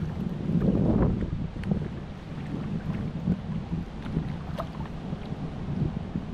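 Wind rumbling on the microphone, with water sloshing around a person's legs as they wade in shallow water. The sound is a bit louder in the first second, with a few faint ticks later.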